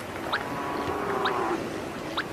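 VHF radio-tracking receiver beeping with the pulses of a tagged vampire bat's transmitter, about one short pip a second; the signal is very strong, meaning the bat is close. About half a second in, a distant sea lion gives a drawn-out call lasting about a second.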